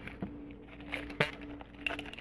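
Faint handling sounds: a few soft clicks and rustles as a paper coffee filter is fitted and secured over the mouth of a glass jar, over a steady low hum.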